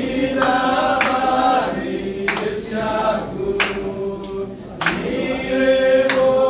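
A choir of voices singing a slow song together, with long held notes in several parts.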